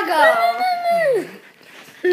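A golden retriever puppy giving one drawn-out whining howl that holds its pitch, then slides down and dies away about two-thirds of the way through.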